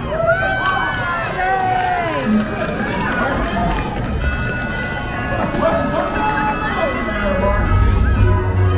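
A lively voice with pitch swooping up and down over quieter music, from the parade's loudspeaker soundtrack.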